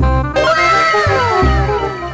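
Background music with a steady bass beat, and over it one long cat meow that starts about half a second in, rises slightly and then slides down in pitch.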